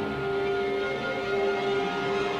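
Symphony orchestra holding a long, steady chord, strongest in the middle register.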